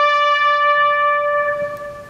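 Solo trumpet holding one long, steady note, which fades away near the end.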